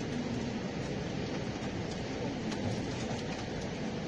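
Steady background rumble and hiss with no distinct events.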